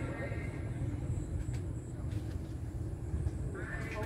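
A low, steady rumble with faint voices in the background; a man's voice starts near the end.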